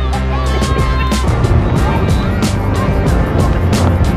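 Background music with a steady drum beat and a held high note that stops about a second in.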